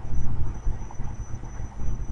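Low, steady rumbling background noise picked up by the microphone, with no speech.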